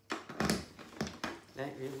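A cable plug being handled and pushed into the output jack of an electric đàn nguyệt (Vietnamese moon lute) with a built-in EQ: a click, a short scraping rustle, then two more clicks. A single spoken word follows near the end.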